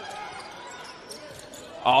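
Basketball dribbled on a hardwood court during live play, with faint voices in the arena behind it; a commentator starts talking near the end.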